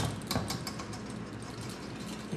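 Wire whisk stirring a thick batter in a stainless steel bowl, its wires clicking rapidly against the metal, then settling into softer scraping.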